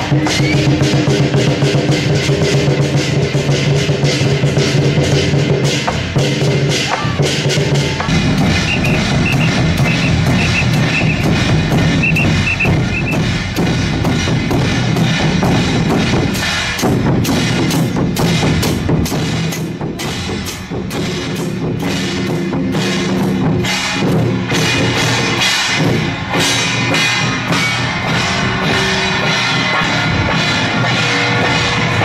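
Temple-procession percussion troupe: a large barrel drum and handheld drums beaten fast, with clashing hand cymbals, over a steady low ringing. The sound changes abruptly about eight seconds in.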